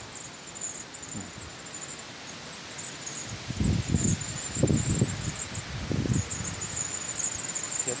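Insects trilling in a high, steady band that breaks off and resumes every second or so. Three low rumbles come in around the middle.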